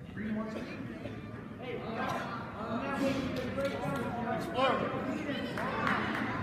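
Several voices of spectators and coaches shouting and calling out at once, echoing in a school gymnasium, growing louder about two seconds in.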